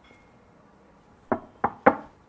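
Knuckles knocking three times on a wooden door in quick succession, the last knock the loudest.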